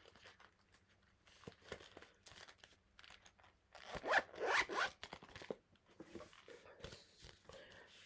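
A zip pulled along a small pouch, loudest about four seconds in, amid light handling rustles and clicks.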